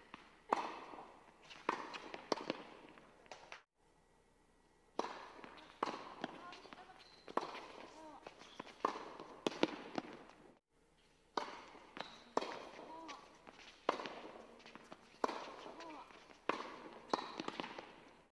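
Tennis balls struck by racquets and bouncing on an indoor hard court, about one sharp crack a second in three short rallies, each hit echoing in the hall.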